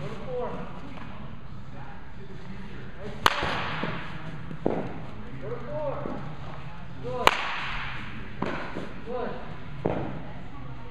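Baseball bat striking a pitched ball twice, about four seconds apart (about three seconds in and again about seven seconds in), each a sharp crack. A softer thud follows each hit a little over a second later, and another comes near the end.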